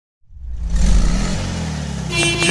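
Car engine sound effect for an animated intro, swelling in quickly at the start and then running steadily with a low engine note.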